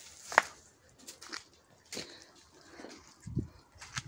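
Footsteps and rustling on garden soil as someone walks with the camera: one sharp click about half a second in, a few fainter ticks, and a short low thud just before the end.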